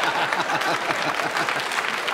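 Studio audience laughing and applauding, a steady wash of laughter and clapping in response to a joke.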